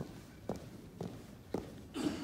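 Marching footsteps of a color guard stepping in unison on a carpeted floor, about two steps a second.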